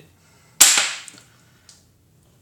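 A single sharp metallic clack about half a second in, fading with a short ring, as a steel washer made into a miniature manhole cover is set down on the table. A couple of faint clicks follow.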